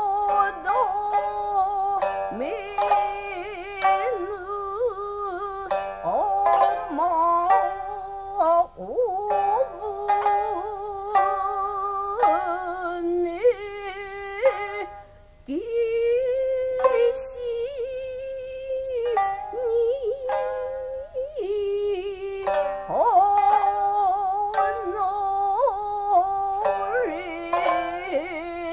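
Jiuta, Japanese traditional song accompanied on the shamisen: a woman's voice holds long, wavering, sliding notes over sharply plucked shamisen notes. A single performer sings and plays.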